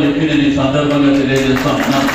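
A man's voice over a public-address microphone, held on long drawn-out syllables like a chanted slogan, with a rougher burst of crowd noise near the end.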